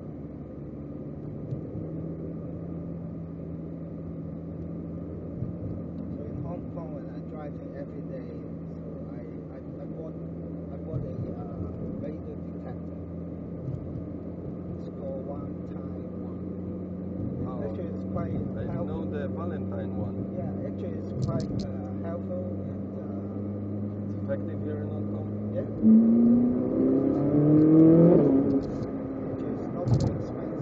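Ferrari 458 Italia's V8 engine running at a steady speed, then revving hard about four seconds before the end, its pitch climbing and the sound growing much louder.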